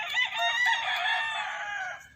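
A rooster crowing: one long crow of about two seconds, dipping slightly in pitch towards its end.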